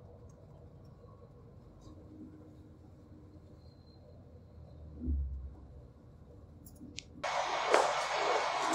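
Faint low rumble of a coach's interior on the road, with one dull thump about five seconds in. Near the end it cuts suddenly to a much louder, noisy background.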